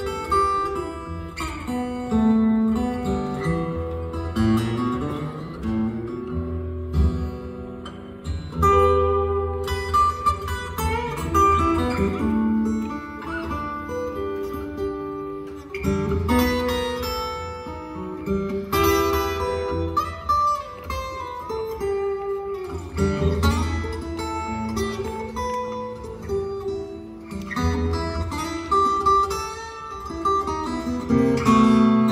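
Live acoustic guitar and hollow-body acoustic bass guitar playing a slow blues instrumental passage, the guitar picking a melody over held low bass notes.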